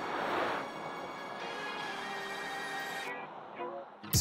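Background music, with a Mercedes-Benz EQS SUV electric car passing close by near the start: a rush of tyre noise that swells and fades over about a second and a half. The music thins out near the end.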